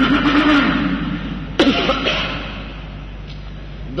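A man's voice: a drawn-out spoken sound in the first second, then, about one and a half seconds in, a sudden loud vocal burst whose pitch falls away, followed by a quieter pause.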